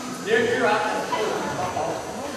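Indistinct voices of people talking and calling out across a gymnasium, without clear words.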